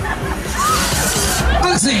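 Fairground music and shouting voices with crowd chatter; a voice begins a countdown with "three" near the end.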